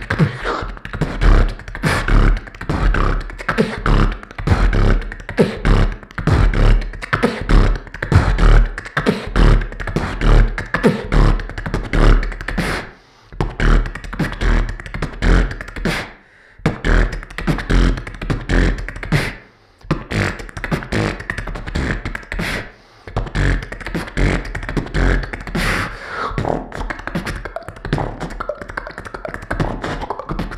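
Solo beatboxing into a handheld microphone: a fast, unbroken run of mouth-made drum sounds with strong low bass hits, pausing briefly a few times midway.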